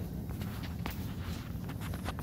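Footsteps and small knocks of people moving about a room, closer and louder near the end, over a steady low hum.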